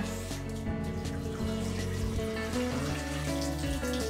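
Tap water running into a stainless steel sink and splashing over a cast iron skillet as it is rinsed of its salt scrub, with background music of held notes underneath.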